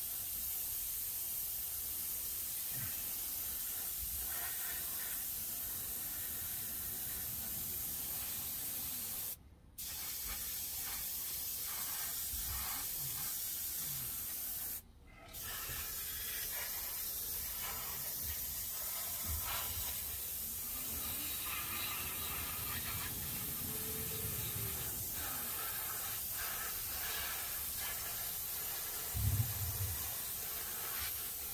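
Gravity-feed airbrush spraying a light fog coat of thinned enamel paint: a steady hiss of air, run at a high pressure of about 40 psi. The hiss cuts off briefly twice as the trigger is let go, and there is a soft bump near the end.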